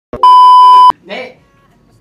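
An edited-in television test-tone beep played over a colour-bars card: one steady high beep, very loud, lasting a little under a second and cutting off sharply. A man's short shout follows.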